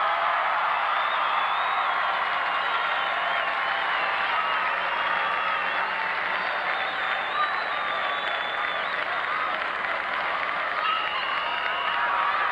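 Football stadium crowd cheering and clapping, many voices calling out at once. A high steady tone sounds for about a second near the end.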